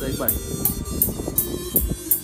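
Music with a drum beat playing over a home karaoke loudspeaker system with blue-faced W720 speakers.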